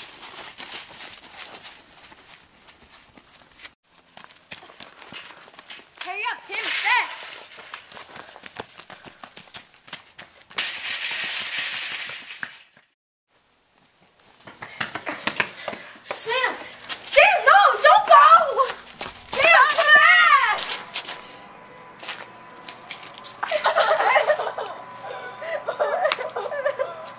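Young people's voices, words indistinct, in several short stretches, the loudest after about fifteen seconds. About ten seconds in there is a two-second burst of hiss, then a moment of near silence.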